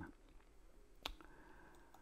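Near silence with a single sharp computer mouse click about a second in.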